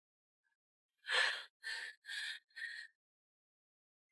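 A woman's shaky, breathy breaths as she holds back tears: one longer breath about a second in, then three shorter ones in quick succession.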